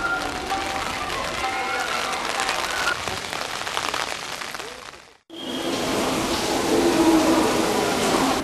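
Rain falling and spattering on stone paving, a dense, even hiss full of fine drips, with faint voices in the distance. About five seconds in, the sound cuts off abruptly for a moment and comes back as a louder, busier ambience.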